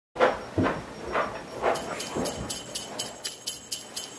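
Jingle bells shaken in a steady rhythm, about four shakes a second, starting about one and a half seconds in. Before them, a few short voice-like sounds.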